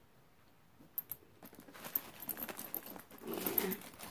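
A handbag being handled and opened: a few light clicks about a second in, then rustling and crinkling that builds from about two seconds in.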